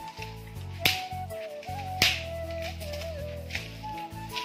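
Background music: a stepping melody over a held bass line, punctuated by two sharp snap-like percussion hits about a second apart.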